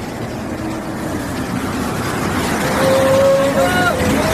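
A bus driving through floodwater close by, its engine and the wash of water getting louder as it draws level and passes. Near the end a short held call rises in pitch over it.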